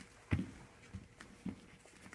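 Bare feet stepping and shuffling on a vinyl mat: a few soft thuds, the most distinct about a third of a second in and another around a second and a half.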